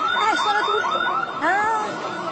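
Electronic store alarm warbling rapidly, about five chirps a second, with a voice briefly over it near the end. The alarm is passed off as a fault.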